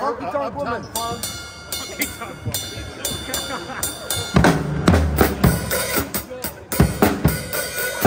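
Acoustic drum kit played in a loose solo: cymbal crashes and snare hits ring out first, then from about halfway the bass drum and toms come in with heavy, uneven hits as the drummer works toward a rhythm.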